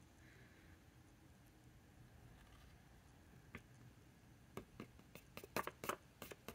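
Near silence, then light clicks and taps from fingers handling a stiff paper ink swatch card: one about halfway through, then a quick run of them in the last second and a half.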